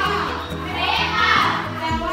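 Music with many children's voices together in a classroom, the sound swelling and easing about every second and a half.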